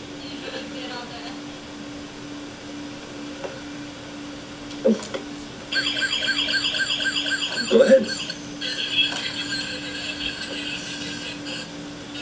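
Toy police motorcycle's electronic siren sound effect, set off from the handlebar: it starts about six seconds in as a fast, repeating warble for about three seconds, then changes to a steadier siren tone that runs on to near the end.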